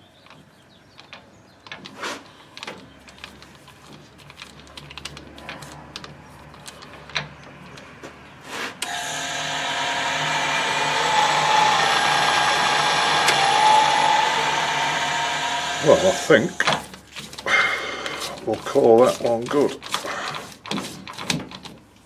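A wood-lathe chuck is screwed by hand onto a freshly cut steel thread, making light metal clicks and knocks. About nine seconds in, the Colchester Bantam metal lathe starts and runs steadily for about seven seconds with the chuck spinning on the thread, then stops, followed by more handling knocks.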